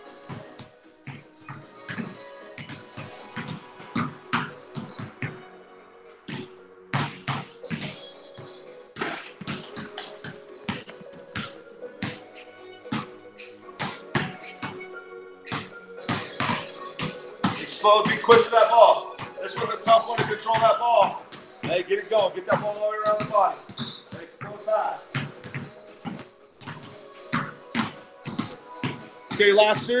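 Basketballs dribbled on a concrete garage floor, a steady run of quick bounces, over background music with a vocal that is strongest in the middle.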